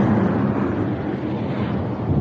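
Wind rushing over the action camera's microphone while the road bike is ridden: a steady, deep rushing noise.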